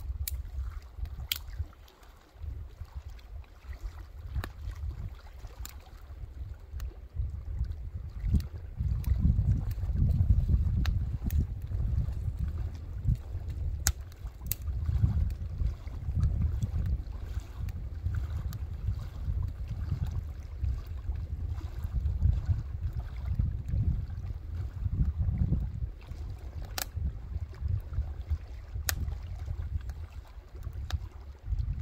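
Wind buffeting the microphone in gusts, with scattered sharp clicks and snaps from a small twig-fed wood fire.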